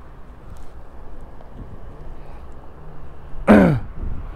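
A man's brief voiced grunt that falls in pitch, about three and a half seconds in, over a steady low background rumble.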